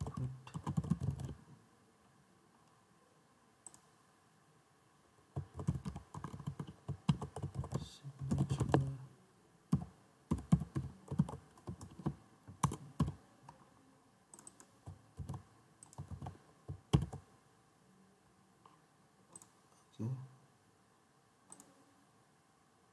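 Typing on a computer keyboard in several bursts of quick keystrokes, with scattered single clicks in between and fewer near the end.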